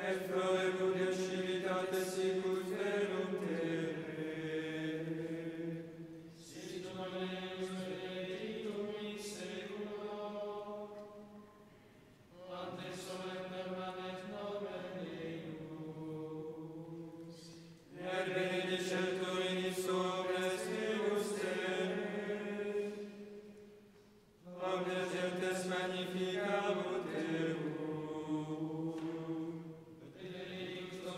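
Men's voices chanting Latin plainchant in unison, in a reverberant church. They sing a psalm in verses of about five to six seconds, each verse closed by a short pause.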